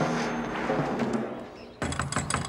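A short music cue fading away, then near the end rapid knocking on a wooden door begins.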